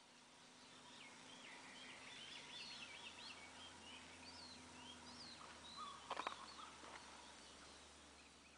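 Faint birdsong fading in and out: small birds chirping in quick short rising and falling calls, over a faint steady hum. A brief cluster of clicks comes about six seconds in.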